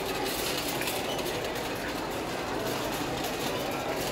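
Steady rumbling noise of a busy warehouse store, with faint clatter and no clear music or speech.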